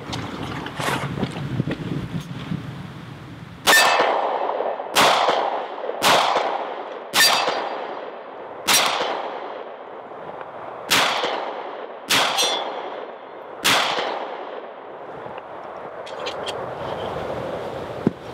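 Eight shots from a .45 ACP Para Ordnance Expert Commander 1911 pistol, fired one at a time about a second or a second and a half apart, starting a few seconds in. Some shots are followed by the metallic ring of the bullet striking a steel target.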